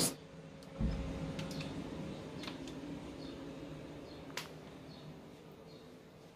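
Quiet room tone with a faint steady hum. There is a dull thump a little under a second in, faint high chirps repeating a little more than once a second in the second half, and a single sharp click near the middle.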